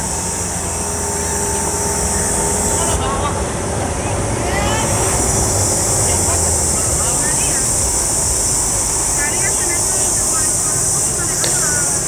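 Outboard boat motors idling with a low steady rumble, mixed with faint distant voices and a steady high-pitched hiss that drops out for a moment about three seconds in.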